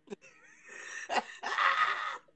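A person's breathy, wheezing laughter in uneven gasps, loudest near the end.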